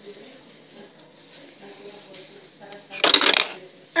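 A Playmobil figure falling on the plastic toy stairs: one short, loud plastic clatter about three seconds in, after a stretch of faint background murmur.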